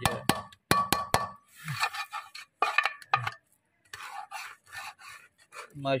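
Metal spatula scraping and knocking against a metal karahi while stirring a thick, crumbly pinni mixture of roasted rice flour, ghee and nuts. A quick run of sharp clinks with a ringing tone comes first, followed by softer, scattered scraping.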